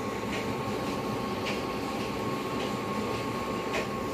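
A steady mechanical drone with a constant high hum, broken by faint light ticks about once a second.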